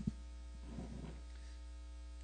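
Steady electrical mains hum in the recording, a low buzz with its overtones.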